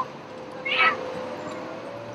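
City street ambience: a steady wash of traffic noise with a faint steady hum. A single short, high-pitched cry cuts through it a little over half a second in and is the loudest sound.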